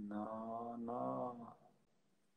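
Soprano singing one held, slightly wavering note heard through a live video-call link. It cuts off abruptly after about a second and a half as the connection drops out.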